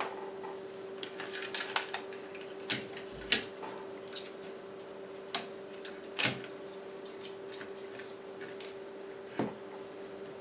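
Scattered small clicks, taps and knocks as hands handle the opened Elecraft KX3 transceiver's plastic case and circuit boards, coming irregularly, with the sharpest about a third and two thirds of the way through. A steady hum runs underneath.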